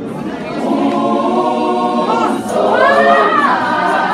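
A youth choir singing in harmony: a long held chord, then a new phrase about halfway through that is louder.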